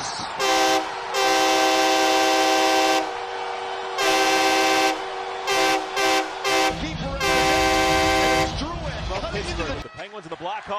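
Montreal Canadiens' arena goal horn, played as the manufacturer's sample: a multi-tone air horn sounding a chord in a pattern of blasts, one short, two long, three quick toots, then a final long blast. A low rumble comes in under the last blasts.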